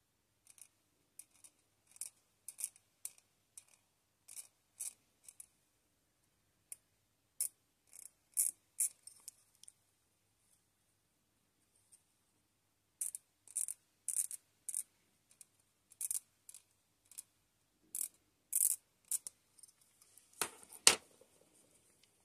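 Hobby knife scraping the chrome plating off a small plastic model part in short, quick strokes, with a pause midway; the chrome is scraped off so that the glue will hold. Near the end there is a single sharp knock.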